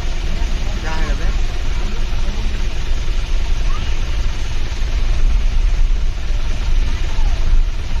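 A vehicle driving at low speed, heard from inside: a steady low engine and road rumble with a haze of wind and road noise. A faint voice is heard briefly about a second in.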